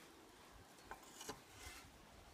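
Near silence, broken by three faint short clicks in the second half.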